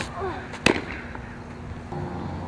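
A fastpitch softball riseball smacking into the catcher's leather mitt: one sharp, loud pop about two thirds of a second in. Just before it comes the pitcher's short, falling grunt on release.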